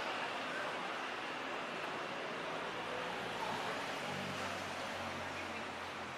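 City street ambience: a steady wash of traffic noise with faint distant voices, and a low engine hum coming in about four seconds in.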